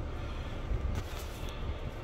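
Steady low rumble inside a parked car's cabin, with a couple of faint clicks about a second in.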